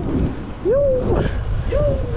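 Wind rumbling on the microphone of a camera riding along on a moving bicycle, with two short rising-and-falling vocal calls from a rider.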